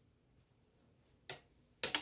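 Two brief soft clacks as the wooden rigid heddle loom is handled during weaving, the second just before the end, over quiet room tone.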